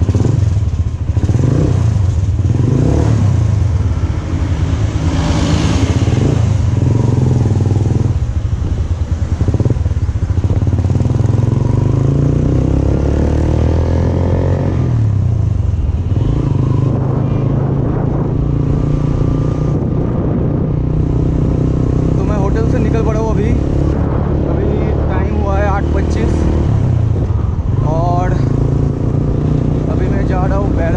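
Motorcycle engine running under way as the bike rides along a road, its pitch shifting as it accelerates and changes gear, with a few voice-like sounds near the end.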